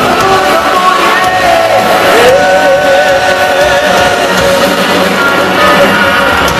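Heavy metal band playing live on stage, heard from the crowd: distorted electric guitars, bass and drums, with a long wavering lead note held through the middle.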